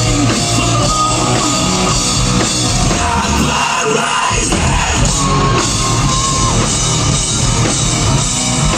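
Hard rock band playing live at full volume: distorted electric guitars, bass guitar and drum kit. The low end drops out briefly about four seconds in, and a high note is held for about a second and a half shortly after.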